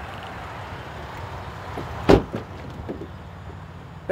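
Pickup truck door being handled: one loud thump about two seconds in, then a couple of light clicks, over a steady low background hum.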